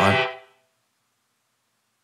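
A held, steady electronic chord under the last syllable of a spoken word, fading out within about half a second; then complete silence.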